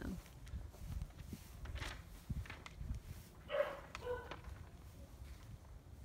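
Footsteps and low handheld-phone rumble as someone walks and turns on a patio, with two short pitched animal calls about three and a half and four seconds in.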